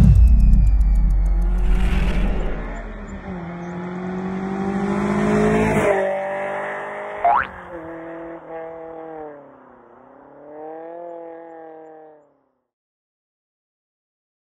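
Car engine revving, its pitch falling and then rising again, mixed with music. The sound stops abruptly about twelve seconds in.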